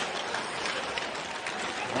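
Steady background noise of an ice hockey game broadcast: rink ambience with no distinct events.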